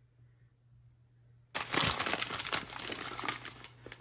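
Newspaper being unwrapped and crumpled by hand, a dense crackling that starts suddenly about a second and a half in and thins out near the end.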